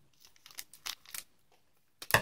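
Faint crinkling and small clicks of trading-card booster packaging being handled, a few short crackles in the first second or so.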